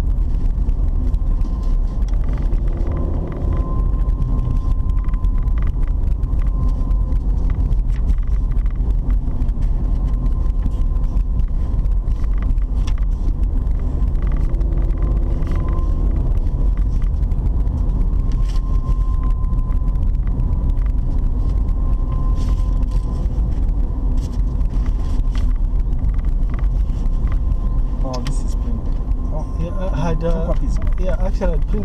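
Car driving on a paved road, heard from inside the cabin: a steady low rumble of engine and tyres, with a thin steady whine above it.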